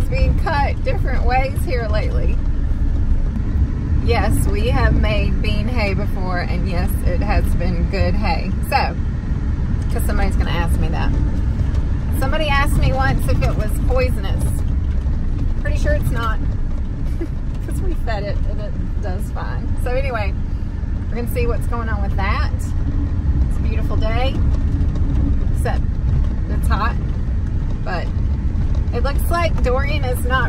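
Steady low road and engine noise inside a moving vehicle's cab, with a woman's voice talking over it for most of the time.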